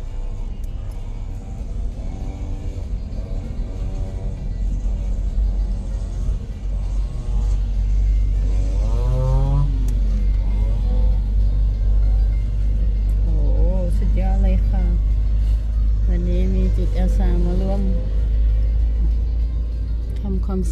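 Low road rumble heard inside a moving car, growing louder about eight seconds in, with music and a singing voice over it.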